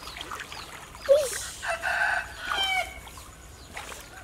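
A rooster crowing once: a long call that starts sharply about a second in, holds, and falls away near three seconds. Short high chirps repeat about three times a second behind it.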